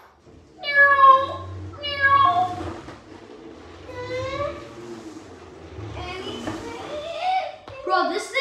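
A child's wordless high-pitched vocal calls, several in a row with rising and falling pitch, like squeals or mock meows. A steady low hum runs underneath.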